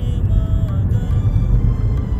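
Steady low rumble of a car driving at speed, heard inside the cabin, with music playing over it.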